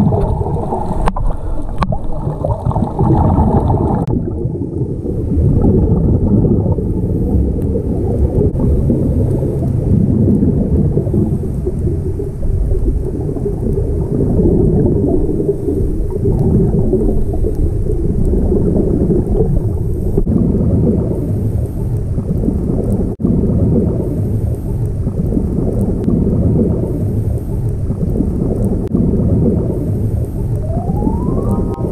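Underwater sound through an action camera's waterproof housing: a muffled, low rumble and gurgle of water and scuba divers' exhaled regulator bubbles, rising and falling unevenly.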